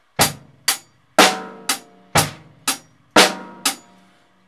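Acoustic drum kit played in a short, steady pattern: eight evenly spaced strokes, about two a second, with every other stroke louder and deeper.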